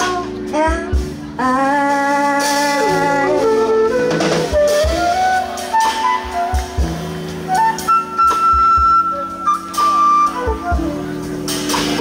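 A small jazz group playing live: a woman sings long held notes over electric bass and drum kit, then a flute carries the melody from about four seconds in.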